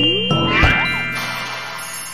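Cartoon magic sound effect: tinkling chimes and a rising whoosh, with a short thud about half a second in, then ringing tones fading away.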